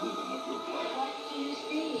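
Electric guitar played quietly, a run of short single picked notes, with a faint steady whine underneath.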